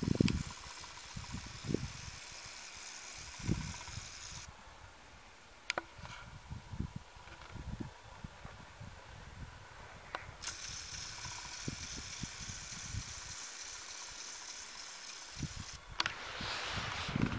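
Faint wind buffeting the microphone in uneven low rumbles, with a few sharp clicks of camera handling, one about six seconds in and one about ten seconds in.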